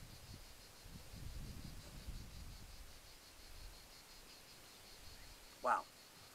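Insects chirping outdoors: a faint, steady, high-pitched pulsing trill that runs on evenly, with a low rumble between about one and three seconds in. A man says "wow" near the end.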